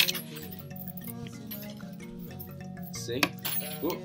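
Loose hand-forged metal mbira keys clinking against each other as they are handled and slip loose, a few separate sharp clinks, over steady background music.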